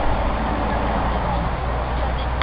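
A minibus engine idling as a low, steady rumble, with faint voices behind it.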